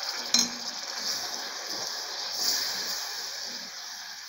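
Banana slices in hot sugar caramel sizzling steadily in a pot on the stove, the caramel just thinned with a few drops of water. A spoon stirs them, with one sharp clink against the pot about a third of a second in.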